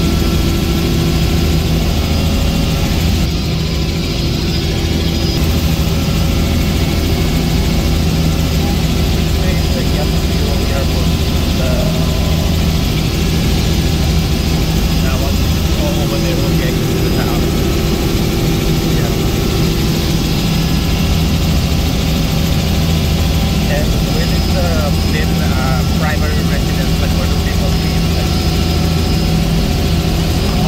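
Helicopter engine and rotor droning steadily, heard from inside the cabin in flight.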